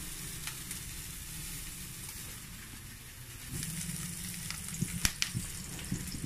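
Vegetables sizzling steadily in a pan on a gas stove, the sizzle growing a little louder past the middle, with one sharp click near the end.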